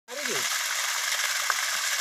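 Heavy stream of water gushing steadily from a 10 hp solar pump's outlet pipe and splashing onto the ground, a constant hissing rush.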